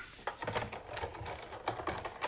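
Light, irregular clicks and taps of a die-cutting machine and craft supplies being set out and handled on a table.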